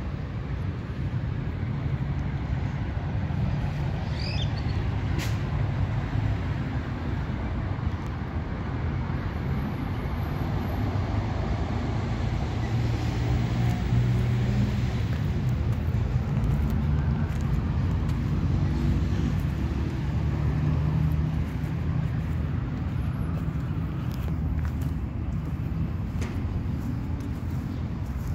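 Steady low rumble of road traffic, with engine hum from passing vehicles that swells through the middle and eases near the end. A brief bird chirp about four seconds in.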